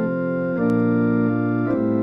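Instrumental organ music: held chords that change about three times, slowly and smoothly.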